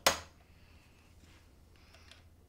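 A sharp knock as the old plastic nut of a guitar is tapped loose from its slot, dying away within half a second, followed by faint small handling sounds.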